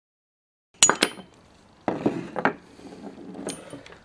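Metal clinks and knocks from an air rifle's action as its end cap is tapped off and set down on a wooden table: a sharp, ringing clink about a second in, then a few duller knocks and one more clink near the end.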